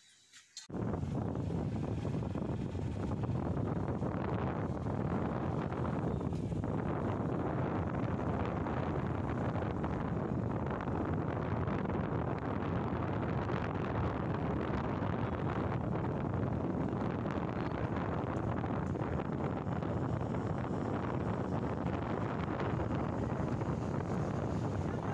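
Wind rushing over the microphone of a moving Suzuki motorcycle, with the bike's running and road noise underneath, a steady loud rush that starts suddenly under a second in.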